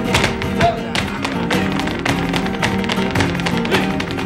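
Flamenco music: acoustic guitar playing under a fast, steady run of sharp taps from the dancers' zapateado footwork, heels and toes striking a hard floor.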